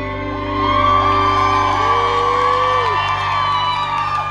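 Live band holding a final sustained chord at the end of a pop song while the audience cheers and whoops, with many overlapping voices rising and falling in pitch.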